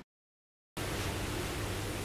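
Dead silence for under a second at an edit cut, then a steady hiss of room tone and microphone noise with a faint low hum.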